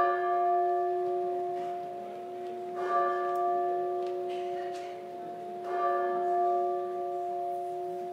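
A bell chime struck three times, about three seconds apart, the same chord each time, each strike ringing on and slowly fading.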